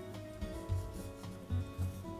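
Soft instrumental background music: steady held notes with a few low bass notes.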